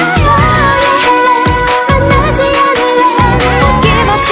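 Pop song playing: a woman's lead vocal over a steady drum beat and bass.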